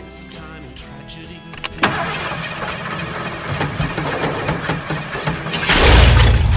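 A motorhome's engine starting: a sudden onset after a couple of seconds, then a steady run that swells louder near the end as the engine catches. Music plays under it.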